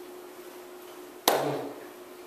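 A single sharp slap of hands striking together about a second and a quarter in, with a short voice sound just after it, over a steady electrical hum.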